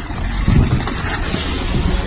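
Low, rough rumble of a small hatchback car close by, mixed with wind buffeting a handheld phone microphone.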